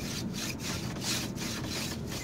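Scrubbing on the carved wooden frame of a Moroccan sofa base: quick back-and-forth rubbing strokes, about three a second.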